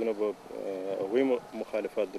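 Only speech: a man talking in a steady, even voice.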